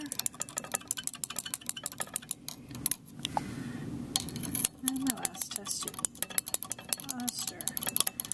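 A stirring rod clinking rapidly and irregularly against the inside of a glass test tube as an iron(III) solution is stirred to dissolve the solid, with a short pause partway through.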